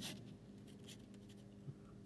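Pen writing on paper: faint, short scratching strokes, the first one the loudest.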